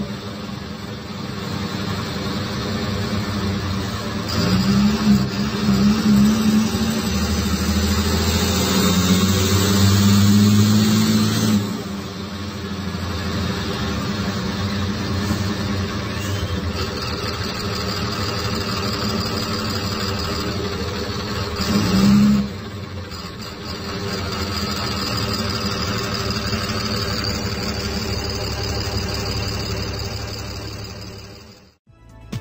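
Cummins ISBe 6.7 inline-six turbo diesel of an Agrale city bus, heard from inside the cabin, pulling hard with a high turbo whine over the engine note. It drops back about a third of the way in, surges briefly past two-thirds, then runs on steadily with the whine.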